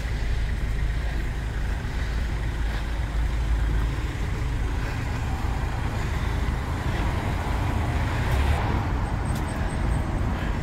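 Road traffic on a busy town street, a steady low rumble of passing cars and vans.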